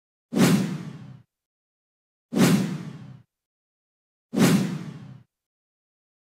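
A whoosh transition sound effect, played three times about two seconds apart as sponsor logos are swiped in. Each one starts sharply with a low thud and fades out within about a second.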